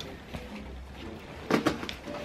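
Fabric rustling as a padded foot muff is pulled out of a pushchair seat, with a few light clicks about one and a half seconds in.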